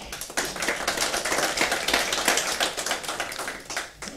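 Audience applauding at the end of a talk, dense clapping that tapers off near the end.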